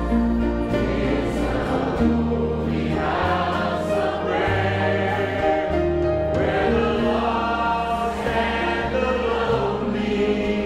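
A group of voices singing a gospel worship chorus together, with instrumental accompaniment whose held bass notes change every second or two.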